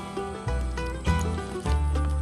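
Background music with a steady low bass line.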